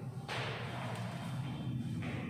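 Cloth rustling against a clip-on lapel microphone as its wearer turns and moves away: a sudden swish about a quarter second in that fades over roughly a second, over a steady low hum.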